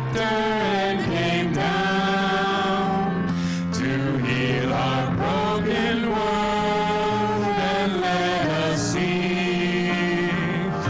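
Vocal quartet of two men and two women singing a song in harmony through handheld microphones, with long held notes.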